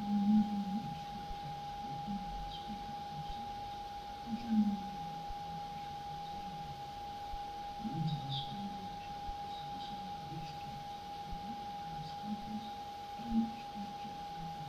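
A steady single-pitched tone, held unchanged, over faint low murmuring voices in the room.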